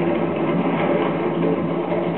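Nissan Xterra SUV driving on a gravel dirt track: steady engine running and tyres crunching over loose gravel.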